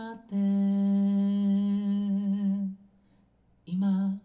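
A man's voice holding one long sung note at a steady pitch, which stops about three seconds in. A short second note begins near the end.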